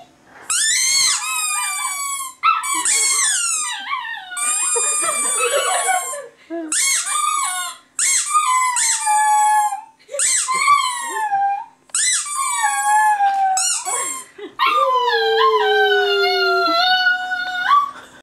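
Puppy howling: a run of about eight high-pitched howls with short breaks between them, most falling in pitch, the last one the longest.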